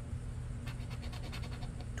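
A scratch-off lottery ticket's coating being scraped off with the edge of a poker-chip scratcher. A quick run of light scrapes starts about a third of the way in and uncovers one number.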